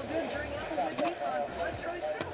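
Indistinct voices talking over the steady rush of wind and of water along the hull of a sailboat heeled in strong wind, with a sharp click about a second in.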